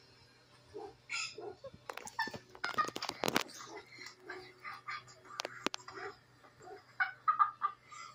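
Short, irregular high-pitched vocal squawks and a few sharp knocks, played back through a laptop speaker over a steady low hum.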